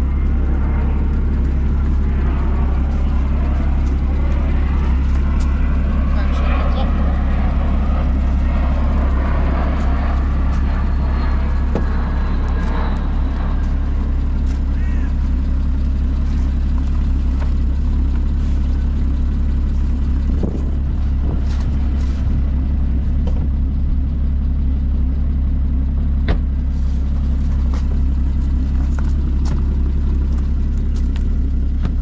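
Porsche 981 Spyder's 3.8-litre flat-six idling steadily, with rustling and a few sharp clicks as the fabric roof is folded down by hand.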